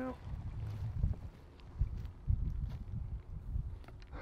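Wind buffeting the microphone: an uneven low rumble that rises and falls, with a few faint clicks.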